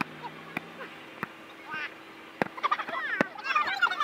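A volleyball slapped by players' hands and forearms several times during a rally, each hit a sharp short smack. Players' laughter and excited calls build up in the second half.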